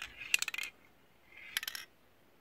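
Aerosol spray-paint can sounding in two short bursts of metallic clicking, the second about a second and a half after the first.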